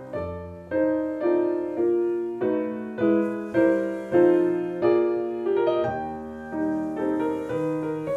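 A piano being played: a slow, even line of struck notes and chords, a new one about every half second to second, each ringing and fading before the next.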